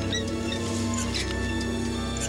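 Orchestral film score with long held low notes, over which short high chirps and clicks come and go.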